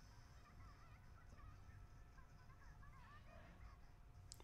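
Near silence: faint room tone with a few faint wavering squeaks.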